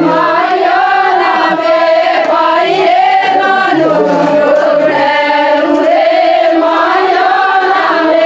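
A group of women singing an Adivasi folk song together, in long held, gliding melodic lines.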